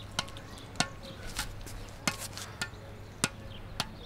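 A squash ball bounced repeatedly off the strings of a squash racket, a sharp tap roughly every 0.6 seconds, about seven in all.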